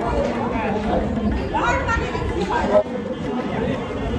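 Several people talking at once in a room: indistinct, overlapping chatter.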